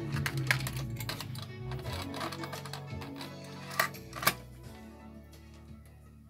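Music playing back from a cassette tape through the hi-fi, dropping away after about four and a half seconds. Two sharp clicks just before it drops are the loudest sounds: the piano-key transport buttons of an Akai GX-M50 cassette deck being pressed.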